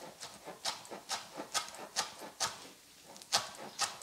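Chef's knife chopping fresh cilantro on a plastic cutting board: the blade strikes the board about twice a second, with a short pause about two and a half seconds in.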